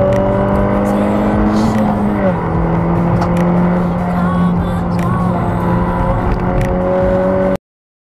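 Peugeot RCZ R's turbocharged 1.6-litre four-cylinder (1.6 THP 270) running hard under load, heard from inside the cabin. Its pitch drops a little over two seconds in as it shifts up, then climbs slowly again. The sound cuts off suddenly near the end.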